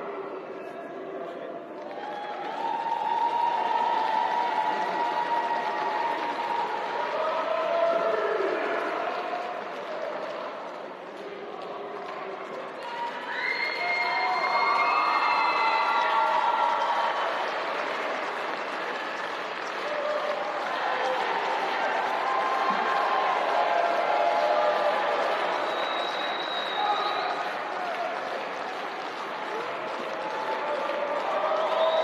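Arena crowd: many spectators shouting and cheering at once, with applause.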